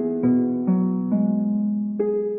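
Slow, soft instrumental relaxation music: a piano-like keyboard playing single sustained notes, a new note about every half second.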